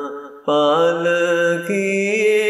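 A singer's voice chanting a ginan, an Ismaili devotional hymn. A phrase ends, there is a brief break for breath, then a long held note that steps up in pitch near the end.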